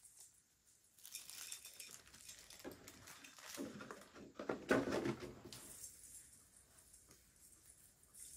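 Rustling and crackling of an artificial mini Christmas tree's plastic branches and its ornaments being handled and moved. It is loudest and busiest in the middle, with a sharp knock just before five seconds, and quiet again near the end.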